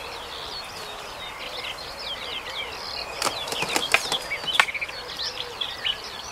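Several birds singing and chirping at once, a busy chorus of short calls. Three or four sharp clicks or knocks break in around the middle.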